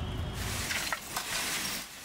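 Crackling, hissing noise from a smoking coal-fired brick kiln, with a few light clicks about a second in. A low rumble under it stops suddenly in the first half-second.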